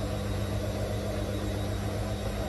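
Bendix front-loading washing machine running its final spin, with a steady low motor hum as the drum turns at low speed.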